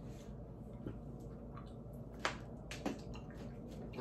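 A person chewing a chewy banana candy with the mouth closed, giving a few short, wet mouth clicks and smacks.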